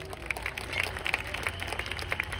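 Audience applauding: a spread of hand claps, with single nearby claps standing out, over a steady low hum.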